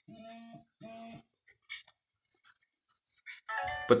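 Two short, identical electronic tones from a phone's speaker, each about half a second long and a fraction of a second apart, followed by a few faint ticks.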